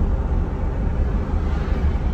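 Steady road and engine noise heard inside the cabin of a moving vehicle: an even, deep rumble with a light hiss over it.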